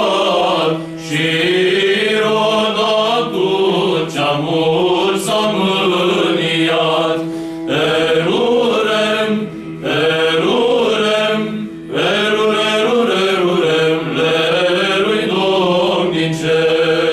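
Small male choir singing a Romanian Christmas carol (colindă) a cappella, in phrases with short breaks between them, over a steady held low note.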